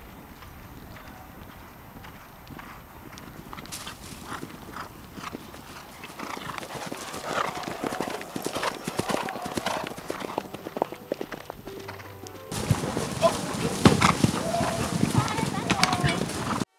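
Hoofbeats of horses cantering over turf, irregular and overlapping: faint at first, growing louder and busier from about four seconds in, and louder still after a cut near the end.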